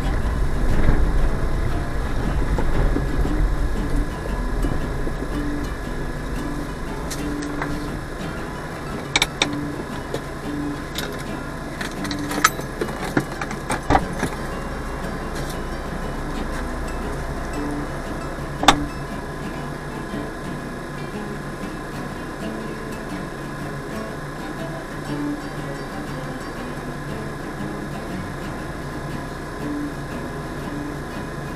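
Car engine and tyres heard from inside the cabin as the car rolls slowly over a rough dirt road. After about four seconds the car stops and the engine idles steadily. A few sharp clicks and knocks come in the middle, the loudest about two-thirds of the way through.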